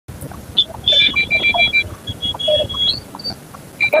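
High-pitched vehicle horn beeping in quick pulses, then held in one steady blast, with crowd voices underneath.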